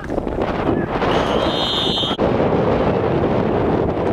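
Wind buffeting the camcorder microphone in a loud, continuous rumble. About a second in, a referee's whistle blows a steady high tone for about a second, ending the play, and cuts off suddenly.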